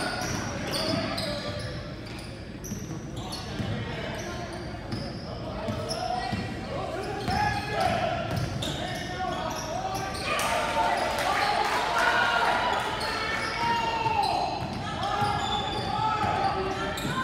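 Basketball game sounds in a large gym: a ball dribbled on the hardwood floor, sneakers squeaking, and crowd and player voices that rise in shouting from about ten seconds in, all echoing.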